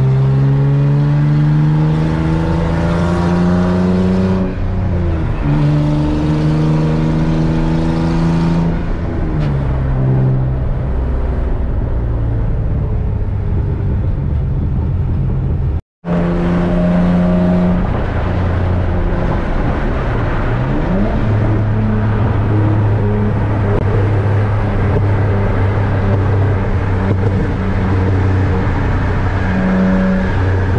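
Infiniti G35's engine heard from inside the cabin, accelerating hard with rising pitch, with a drop in pitch at each upshift about four and eight seconds in. After a brief dropout about halfway, it settles to a steady drone at freeway cruising speed.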